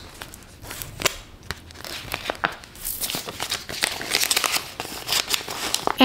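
Canadian polymer banknotes being counted and handled, crinkling and rustling with many small snaps. The crackle gets busier about halfway through.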